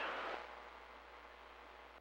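Faint, steady hiss from a CB radio receiver in the gap between transmissions, after the last voice trails off in the first half-second.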